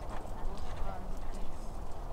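Outdoor ambience: a rumble of wind on the microphone, faint indistinct voices, and scattered light clicks.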